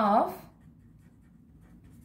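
A spoken word, then the faint sound of a felt-tip marker writing on paper.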